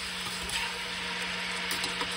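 Chicken legs sizzling steadily in hot oil in a pressure cooker, over a faint, steady low hum.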